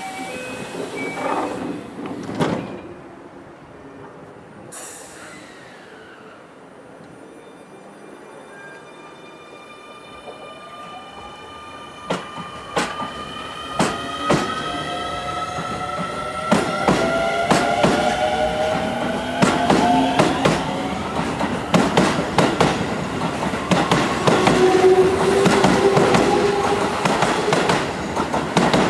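Keio electric train departing: a knock about two seconds in and a short hiss of air, then the traction motors' whine of several tones rising in pitch as the train accelerates. Wheels click over the rail joints, faster and louder as the cars pass.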